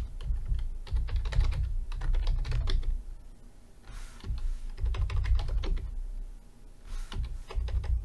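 Typing on a computer keyboard: quick runs of key clicks, each with a dull thud, in three spells with short pauses between.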